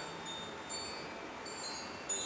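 Wind chimes ringing lightly: several thin, high tones sounding and fading over one another.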